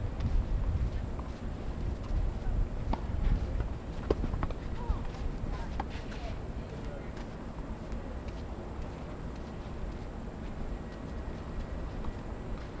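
Tennis balls being struck by rackets and bouncing during a doubles rally on a clay court: a scattering of sharp pops over the first seven seconds or so, over a low rumble that eases after about four seconds.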